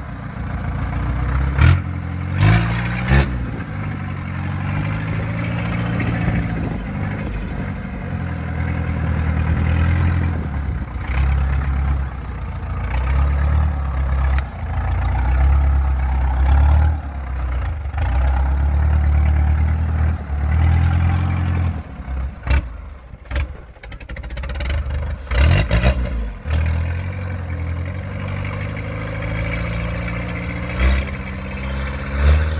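Engine of a tracked rice-sack carrier running loud under load as it crawls over rough ground, its pitch rising and falling with the throttle. Several sharp clanks and knocks come through near the start and again a little past the middle.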